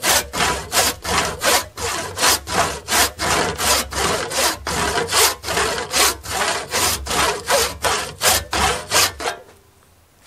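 Hand saw cutting down the wedge kerf in the top of a wooden axe handle, in quick back-and-forth strokes, about three a second. The sawing stops near the end.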